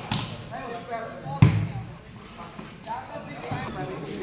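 A volleyball struck by hand during a rally: a loud slap about a second and a half in, with a fainter hit at the very start, over scattered voices of an onlooking crowd.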